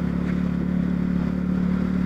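Honda CB Twister 250's single-cylinder engine running at a steady, light cruise of about 35 km/h, a constant drone heard from the rider's seat, with no revving.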